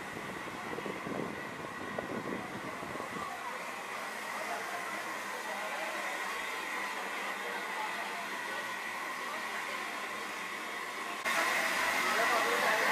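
Steady background noise, with faint voices in the first few seconds. The noise steps up abruptly and gets louder about eleven seconds in.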